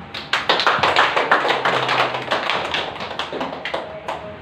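A small group clapping, starting just after the start and thinning out near the end.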